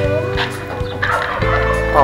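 A male turkey gobbling, over a steady background hum.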